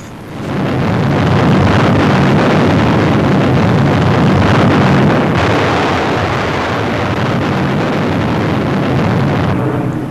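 Long, loud rumble of the first hydrogen bomb explosion on an old newsreel soundtrack, a deep noise that swells in within the first second, holds steady, and drops away just before the end.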